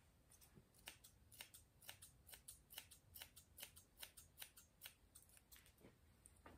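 Grooming scissors snipping through a Schnauzer's matted beard hair: a steady run of quiet, crisp snips, two or three a second.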